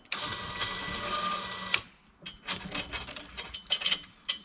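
A steady mechanical whirring for about a second and a half that stops with a clack, then an irregular string of metallic clicks and clinks from the log arch's chain and rigging.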